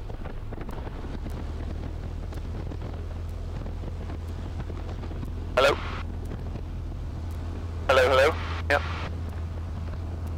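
The Ercoupe's Continental O-200 engine and propeller run with a steady low drone as the plane rolls onto the runway, with some wind on the microphone. Short bursts of a voice cut in about halfway through and again near the end.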